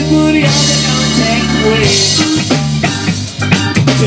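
Reggae band playing live, with drum kit, bass and guitar, in a stretch without vocals.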